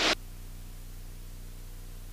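Steady hiss with a faint low hum: the muted background of a light aircraft's cockpit audio in climb. A spoken word cuts off just as it begins.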